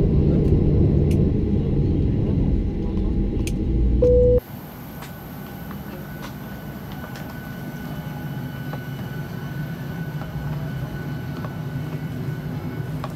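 Boeing 737-800 taxiing, heard inside the cabin near the wing: a loud, low, rattling rumble, with a short steady tone just before it cuts off suddenly about four seconds in. It then gives way to the much quieter, steady hum of the parked cabin's air system, with a faint high whine and a few light ticks.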